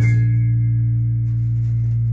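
Final sustained chord of a jazz trio ringing out: an electric bass holds a low note under the piano's chord, fading slowly. A cymbal wash dies away in the first moment.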